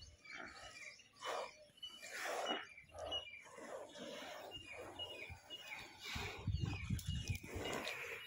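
Water buffaloes swimming in a tank, blowing and snorting breath through their nostrils in repeated short gusts, with water lapping. Short high chirps repeat in the background, and a low rumble comes in about six seconds in.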